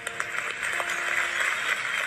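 Audience applauding, with faint sustained acoustic guitar notes still ringing underneath.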